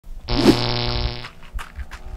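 A low, buzzy held note lasting about a second, with a brief swoop in it near the start, followed by a few light ticks and taps as the intro music begins.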